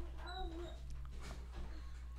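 A dog whimpering once, a short high whine near the start, over a steady low hum.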